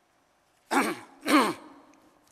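A man clearing his throat twice: two short, loud voiced sounds about half a second apart, each falling in pitch, after a brief silence.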